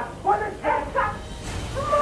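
Loud, short shouted cries of voices in short bursts, with a brief knock about one and a half seconds in.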